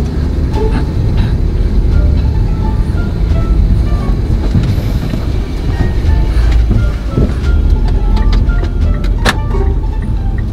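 Steady low rumble of a moving car heard from inside the cabin, with light background music over it and a single sharp click near the end.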